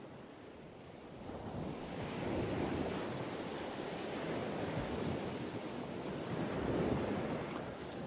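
Ocean surf washing on a beach, a steady rushing noise that grows louder over the first couple of seconds.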